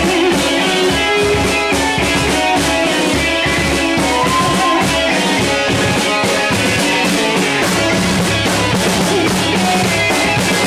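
Live rock band playing: electric guitars over a drum kit keeping a steady beat.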